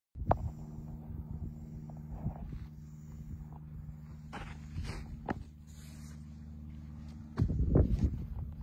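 A steady low engine hum with a few sharp clicks scattered through it, then a louder rumble near the end.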